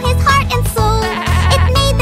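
Bouncy children's background music, with a cartoon lamb bleating once, a wavering bleat of just under a second starting about a second in.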